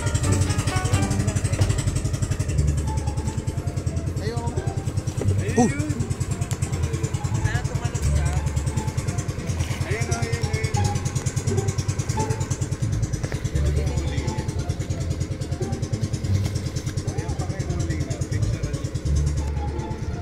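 Outrigger boat's engine running steadily with a fast, even putter, under background music.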